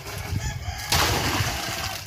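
Water poured from a small scoop into a plastic drum, a steady splashing pour that starts about a second in and runs on.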